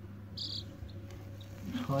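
Days-old chicks peeping: a string of short, high cheeps, the loudest about half a second in, over a low steady hum.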